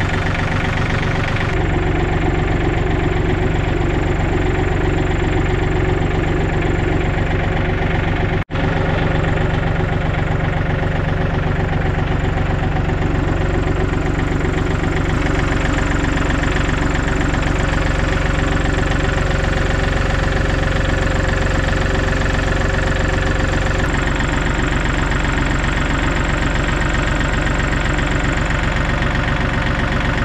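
John Deere compact tractor's engine idling steadily, cut off for an instant about eight seconds in.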